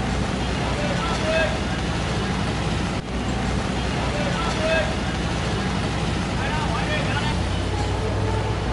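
Busy street ambience: a steady low hum of traffic with scattered voices of people chattering.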